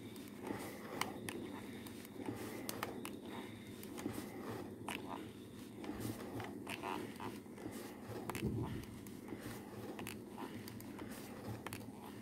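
Quiet scraping and rubbing of a Tefal iron sliding over crochet lace on a cotton cloth, and of fingers stretching and pressing the lace, with many small scattered clicks.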